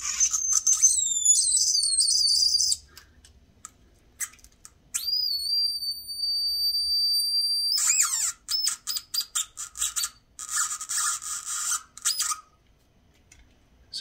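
A homemade 555-timer touch noise maker playing through its small 8-ohm speaker. Its pitch is set by the skin resistance of fingers on the copper-tape pads. High-pitched electronic tones glide up and down and then cut out; about five seconds in comes one steady held tone, followed by a choppy, stuttering run of beeps as the touch changes.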